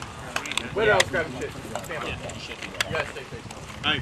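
Rifle cartridges being pressed one by one into a polymer rifle magazine: several sharp clicks, irregularly spaced, with voices in the background.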